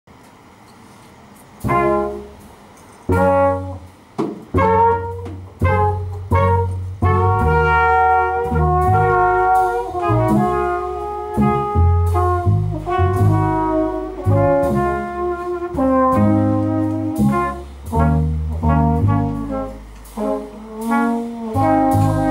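Small jazz group of trumpet, trombone, bass and drums playing live. After a quiet start, the band comes in about two seconds in with short punched chords, then the trumpet and trombone hold long notes together over the bass and drums.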